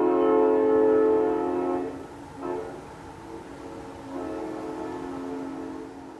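A 1953 Nathan M5 five-chime air horn sounding a chord: a loud blast for about two seconds, a short toot, then another long blast that fades near the end.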